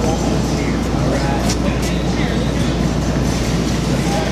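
A steady low rumble with faint, indistinct voices over it.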